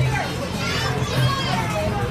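Children's voices and chatter over a steady background hum, with music playing faintly underneath.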